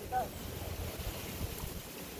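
Wind rumbling on the microphone, with a brief bit of a man's voice just after the start.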